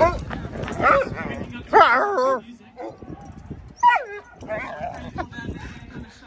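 Two dogs barking and yipping at each other in play. Several short calls, with a longer wavering call about two seconds in and a falling call about four seconds in.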